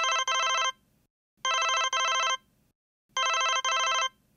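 Mobile phone ringing with a double-ring ringtone: three pairs of short electronic rings, a pair every second and a half or so.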